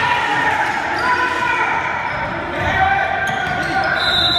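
A basketball dribbled on a hardwood gym floor during play, with players' voices calling out and echoing in the large hall.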